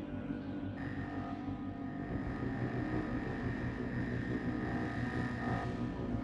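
Dark ambient noise drone: a steady low rumbling bed with sustained tones. About a second in, a high hiss and a thin steady whistle join it.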